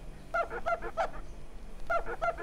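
A dish towel rubbed over a plate, squeaking in short pitched squeaks: a quick run of about five in the first second, then another run starting near the end.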